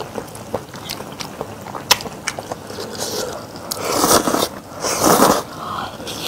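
Close-miked chewing of a seafood stew, with sharp wet mouth clicks, then two louder, longer mouth sounds about four and five seconds in as the next spoonful is eaten.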